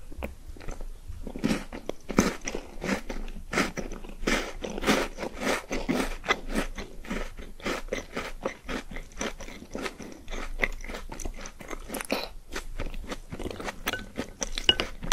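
Close-miked crunchy chewing: a mouthful of small pink balls spooned from a bowl of milk, crunched in quick, irregular crackles throughout.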